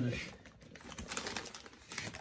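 Steel trowel scraping and tapping on red bricks and mortar during bricklaying: a run of small, irregular clicks and scrapes. A voice trails off just at the start.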